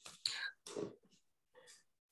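A person's faint whispered voice: three short breathy sounds in the pause between spoken remarks.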